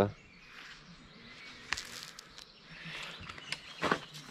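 Faint outdoor background with a few scattered light clicks and scuffs, from a worker moving about on a concrete step.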